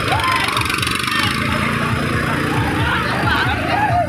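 Eicher tractor's diesel engine running steadily at close range, a continuous run of low, even pulses, with crowd voices and shouts behind it.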